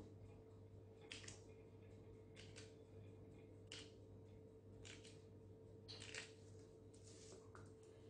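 Faint short scratches of a knife tip notching soft cookie dough on parchment paper, about one a second, over a low steady hum.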